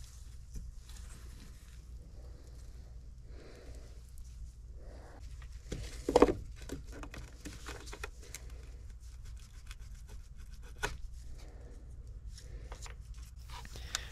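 Rustling and handling noise of gloved hands and tools working in loose-fill attic insulation, with scattered light clicks and a louder knock about six seconds in, over a low steady hum.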